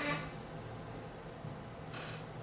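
Steady low hum with faint hiss: classroom room tone.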